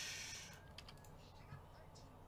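A few faint, scattered clicks from a computer keyboard and mouse.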